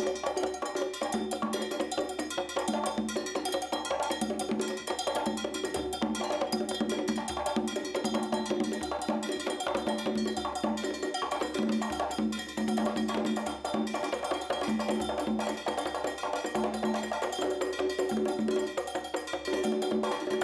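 Cuban percussion playing a steady groove: a cowbell struck with a drumstick in a repeating pattern, over timbales and conga drums.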